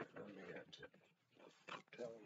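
A man's voice making wordless vocal sounds, twice: once at the start and again near the end.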